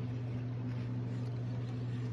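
A steady low hum with a faint hiss behind it, unchanging throughout.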